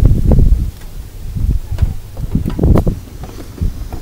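Wind buffeting the microphone in irregular low gusts, with a few short knocks from handling the camera.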